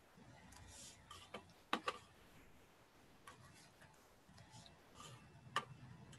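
Near silence with a few faint, sharp clicks, the loudest two close together about two seconds in and another near the end.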